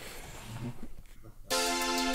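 Faint hiss, then about a second and a half in, an instrumental backing track starts with a held, sustained chord.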